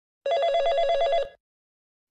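Desk telephone ringing: one warbling electronic ring about a second long.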